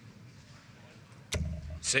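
Quiet hall tone, then a dart striking a sisal dartboard with a sudden sharp hit about a second and a half in.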